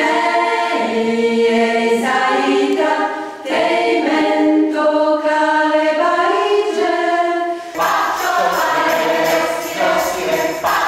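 Mixed choir of men and women singing a cappella, holding chords in long phrases with short breaks between them.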